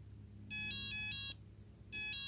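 Mobile phone ringing: an electronic ringtone of quickly alternating tones plays one short phrase about half a second in, then starts the same phrase again near the end.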